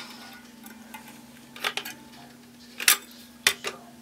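Hand caulk gun squeezed to lay caulk on the back of a plaster rock casting, its trigger and plunger rod giving a few short, sharp clicks in the second half, over a steady low hum.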